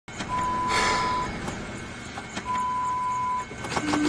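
Two long, steady electronic beeps, each lasting about a second and about two seconds apart, with a short hiss during the first. Near the end comes a quick run of clicks as music starts.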